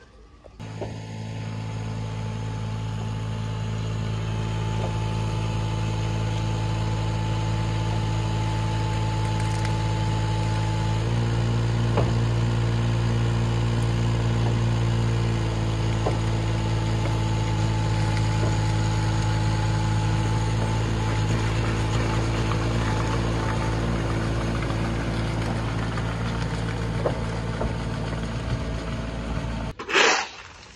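Kubota U10-3 micro excavator's diesel engine running steadily while it lifts a bulk bag of gravel. It grows louder about eleven seconds in as the hydraulics take load, with a few light clanks.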